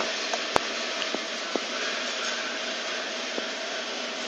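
Steady, fan-like background hiss, with one sharp click about half a second in and a few faint ticks after it.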